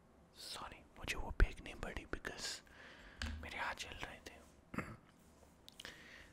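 A man whispering close to the microphone, with one sharp click about a second and a half in.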